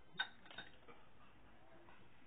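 A single sharp click shortly after the start, followed by a couple of faint ticks and low room noise.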